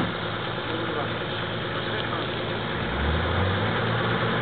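Nissan four-wheel drive's engine running under load as the vehicle crawls through deep mud, with the revs rising about three seconds in.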